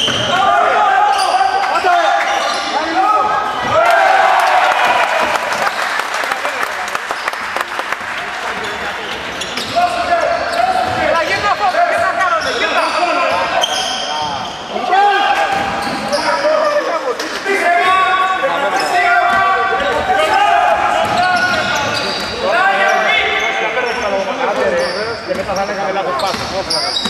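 Basketball dribbled on a hardwood gym floor during a game, with players' and spectators' voices calling out in an echoing sports hall.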